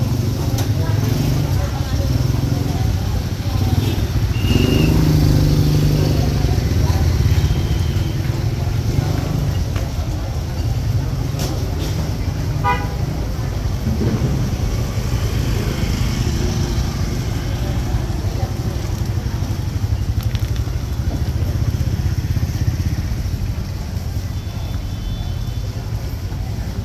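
Busy open-air market lane: people talking over a steady low rumble of motorcycles and traffic, with a couple of short high horn toots in the first eight seconds.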